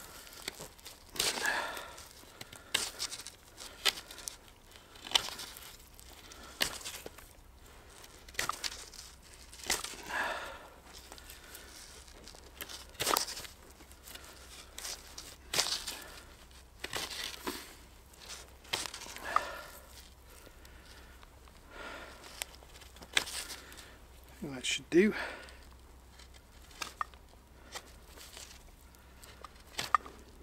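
Knife whittling the rough end of a wooden stick smooth, in short irregular scraping strokes every second or two.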